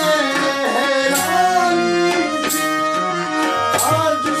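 Harmonium and tabla playing in a Pakistani folk-ghazal style, the harmonium holding sustained chords while the tabla lands accented strokes about every second and a quarter. A man sings over them.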